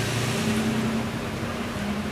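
A steady low engine hum from a vehicle running nearby, over a constant haze of street noise.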